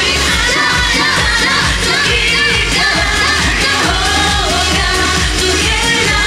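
J-pop song from a medley: a singing voice over a steady, loud dance beat with pulsing bass.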